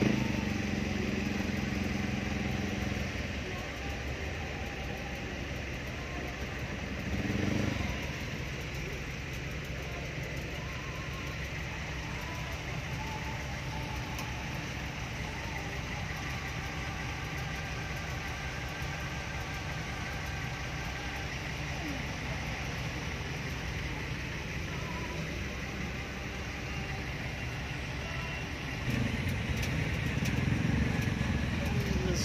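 A jeepney's diesel engine running, heard from inside the passenger compartment with road and traffic noise. It is louder in the first few seconds, swells briefly about seven seconds in, and grows louder again near the end as the jeepney moves off.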